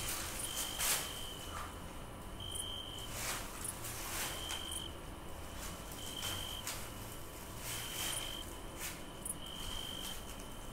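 Cricket chirping: a high, thin trill about half a second long, repeating roughly every second and a half. There are a few soft rustles between the chirps.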